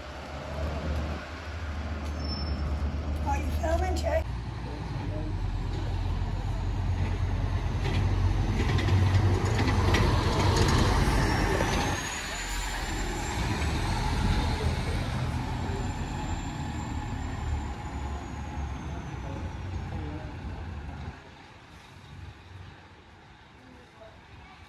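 Diesel double-decker buses running close by as they pull away and drive past, a deep engine rumble with a high whine that rises and then falls midway; the rumble drops away sharply near the end.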